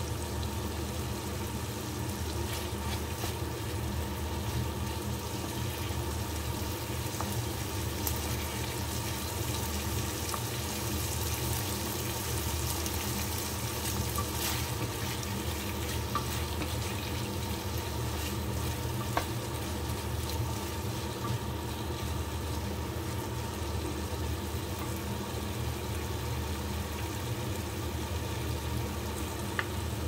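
Pork in red curry paste frying in a nonstick wok with a steady sizzle, stirred now and then with a wooden spatula.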